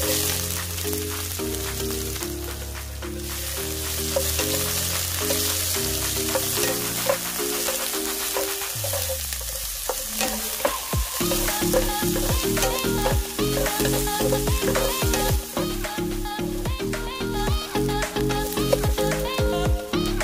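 Bell pepper strips sizzling in hot oil in a nonstick wok, with a loud burst as they go in at the start. They keep frying steadily while being stirred with a wooden spatula.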